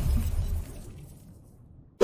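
Logo-intro sound effect: the tail of a shattering crash with a low rumble, dying away steadily to near silence shortly before the end.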